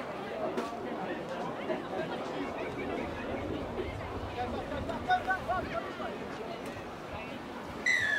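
Murmur of spectator chatter and distant voices, with a few louder calls about five seconds in. A brief, sharp, high-pitched sound comes right at the end.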